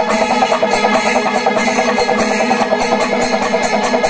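Panchavadyam, the Kerala temple percussion ensemble, playing loud and continuous: fast, dense drumming with steady metallic ringing, as from hand cymbals, held underneath.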